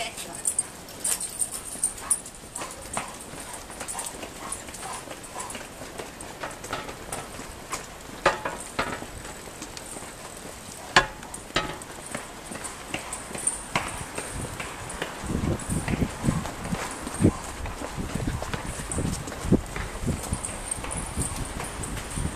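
Footsteps on a paved pavement, people walking briskly behind a trailing dog, with irregular clicks and knocks; about two-thirds of the way in, a low rumble joins.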